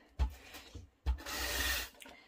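Tape-runner adhesive dispenser pressed onto the back of a photo and drawn along it: a short stroke just after the start, then a longer, steady stroke of under a second in the second half.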